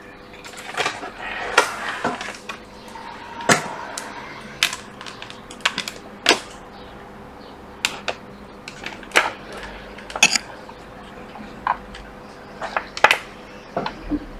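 Irregular clicks and taps of USB charging cables and their plugs being handled and plugged into an iPad on a work bench, over a faint steady hum.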